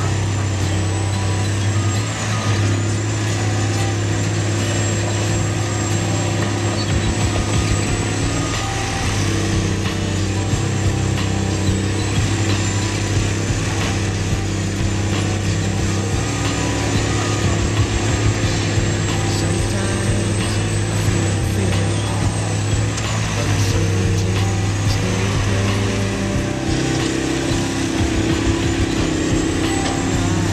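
Caterpillar 345B L excavator's diesel engine running steadily under load while digging a trench, with a thin high whine over it that dips and comes back several times.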